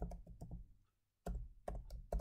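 Keystrokes on a computer keyboard: a few quick key presses, a short pause about a second in, then another run of keystrokes.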